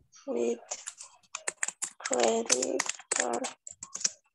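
Computer keyboard typing: a quick run of key clicks from about a second in, mixed with short stretches of a person talking.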